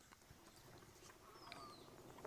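Near silence, with a few faint small clicks and a faint high falling chirp about one and a half seconds in.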